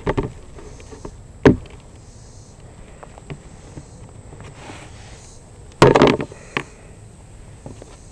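A frame feeder knocked against a metal hive cover to shake out its contents of dead bees and debris: one sharp, loud knock about a second and a half in, then a quick cluster of knocks about six seconds in, with a few lighter taps between.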